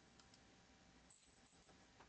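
Near silence: room tone with two faint computer mouse clicks shortly after the start.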